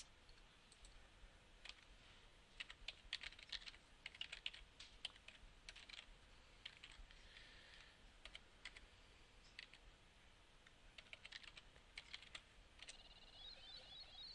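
Computer keyboard keys clicking faintly in irregular runs as a web address is typed.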